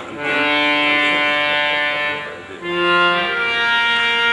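Harmonium playing an Indian classical melody in long held, reedy notes. The phrase breaks off briefly about two and a half seconds in, then resumes on lower sustained notes.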